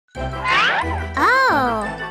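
Short musical intro jingle: chiming tones over a steady bass line, with a high vocal swoop rising and falling about a second in.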